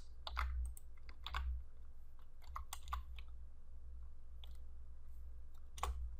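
Typing on a computer keyboard: a run of irregular keystrokes through the first three seconds, then a few scattered taps.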